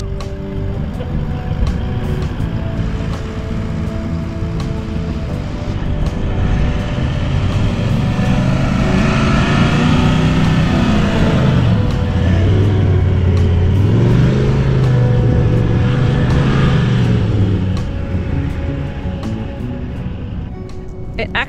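A four-wheel-drive ute's engine pulling through soft beach sand, its pitch rising and falling as it is revved, with the tyres let down to about 25 psi to get it out of a bog. Background music plays over it.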